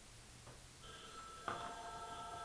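A telephone ringing faintly: a steady chord of several tones that starts about a second in and grows louder about halfway through.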